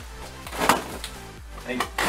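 Plastic bubble wrap crinkling once, sharply, as a hand works at it, over a steady low hum.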